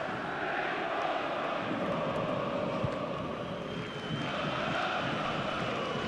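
Ambient sound of a football match in a stadium during play: a steady wash of noise with no commentary. A thin, high, steady tone comes in about halfway through and is held for around three seconds.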